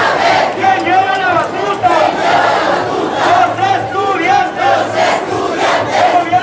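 Large crowd of protest marchers shouting and chanting together: many voices at once, loud and continuous.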